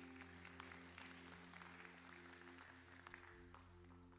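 Faint applause from a congregation, a dense patter of claps that thins out near the end, over a held chord from the band ringing on underneath.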